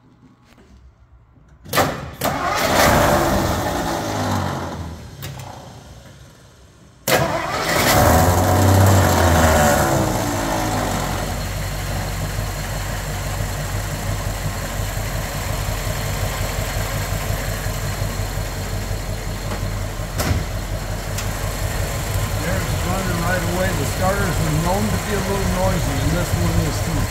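1957 Ford Thunderbird Special 312 V8 being started. It fires about two seconds in and fades away over the next few seconds, then is started again about seven seconds in, catches with a brief rev, and settles into a steady idle.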